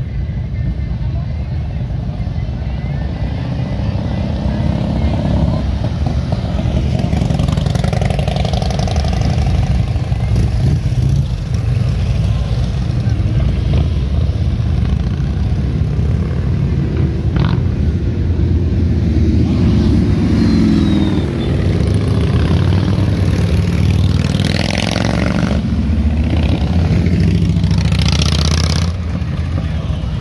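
Harley-Davidson motorcycles riding past one after another, their engines a steady low rumble that swells as each bike goes by, with some revving. Voices of a crowd are underneath.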